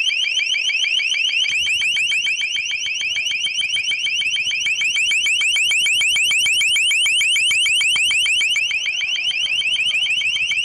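LRAD long-range acoustic device sounding its high-pitched alert tone: a short rising chirp repeated about eight times a second without a break.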